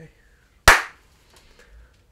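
One sharp hand clap, under a second in, with a short ring-off in the room.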